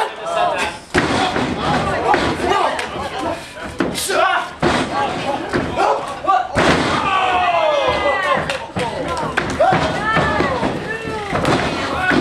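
Wrestlers' bodies slamming onto the wrestling ring mat several times, the loudest when a thrown wrestler lands about six and a half seconds in, over a crowd shouting and cheering throughout.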